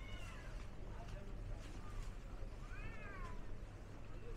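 A cat meowing twice, each call rising and then falling in pitch, over a steady low hum of street noise.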